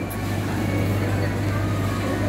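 Steady low machine hum with a faint wash of background noise.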